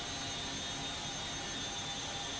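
Steady drone of a military transport aircraft's turbine engines heard from inside the cabin, with a thin high whine over it.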